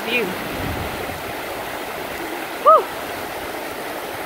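Shallow mountain river rushing steadily over boulders and small rapids.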